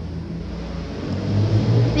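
Steady low hum on a video-call audio line, growing louder about a second in, as a microphone's volume is being adjusted.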